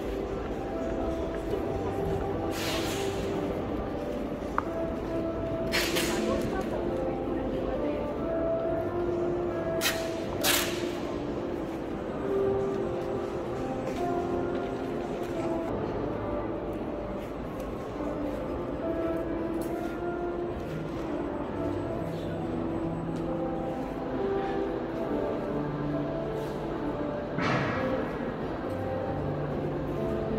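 Background music of held, slowly changing notes over the steady murmur of people talking in a large hall. A few brief sharp clicks or knocks come through, two of them close together about ten seconds in.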